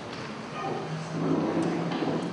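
A man's low voice held on one steady note, a drawn-out hesitation sound into a handheld microphone, starting about a second in over the general murmur of a room of people.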